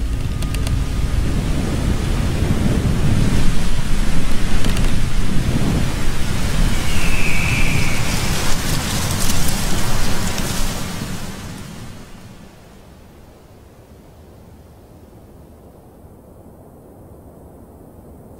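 Strong wind rushing through tall grass, a loud low rumbling noise that builds over the first few seconds, holds, then dies away about twelve seconds in to a low hush.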